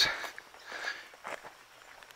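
Soft, faint footsteps on grass and gravel, a few irregular steps.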